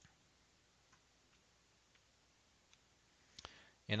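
A few faint, scattered computer mouse clicks over quiet room tone, the first as a dialog button is clicked. A man's voice starts right at the end.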